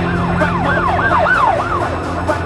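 A siren sound effect in an electronic dance track, its pitch sweeping up and down about four times a second over a held synth tone and beat, dying away near the end.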